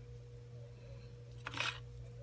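Small plastic parts of an action figure's head being pressed and handled: a faint click and a brief scrape about one and a half seconds in, over a low steady hum.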